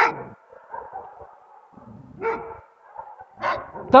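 A dog barking, a few separate barks about a second apart.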